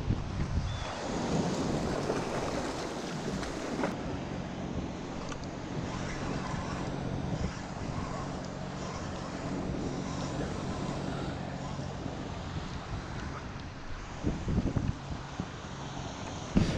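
Wind buffeting the microphone over choppy sea water washing and slapping around a kayak, with a steady low hum underneath from about four seconds in.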